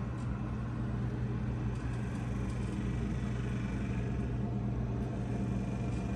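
A steady low mechanical hum with a faint rumble beneath it, unchanging throughout.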